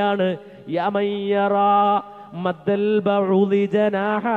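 A man chanting Arabic verse in a melodic voice over a microphone, holding long, steady notes with short breaks for breath.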